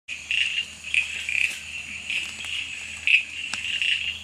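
Male Amboli bush frog (Pseudophilautus amboli) calling with its vocal sac puffed out: a run of short, high-pitched notes at uneven intervals, the loudest about three seconds in. A steady high chorus of other callers runs behind it.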